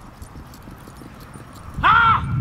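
A loud, high-pitched shout of about half a second near the end, rising and then falling in pitch: the helper challenging the charging dog.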